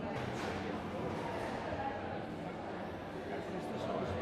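Indistinct chatter of several people talking in a large, echoing hall, with no single voice standing out.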